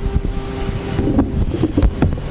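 Low rumbling noise on the microphone with a few dull thumps, the kind of sound that wind or handling on the microphone makes.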